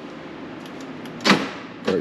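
One short, loud clunk about a second in as the car's proximity keyless-entry system unlocks and energizes, over a steady low background hum.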